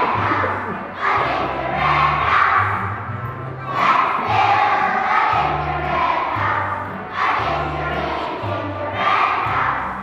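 A large group of young children singing together as a choir, over an instrumental accompaniment whose low notes change about every second.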